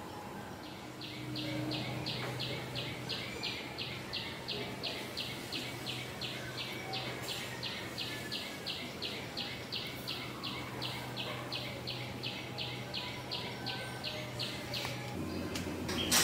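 A short high chirp repeated very evenly, about three to four times a second, over a low steady hum; both start about a second in and stop shortly before the end.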